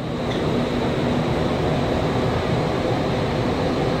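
Steady, loud rush of air in an indoor skydiving vertical wind tunnel.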